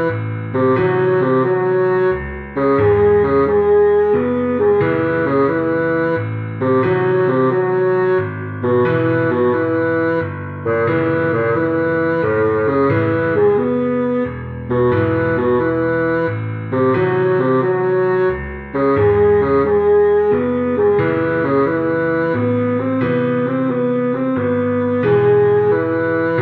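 A bassoon melody played from a notated arrangement over a backing track, in a steady repeating phrase of short notes above a sustained bass line.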